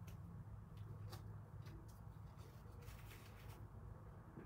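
Near silence: a low steady hum with faint scattered clicks from hands pressing small floral craft pieces into glue.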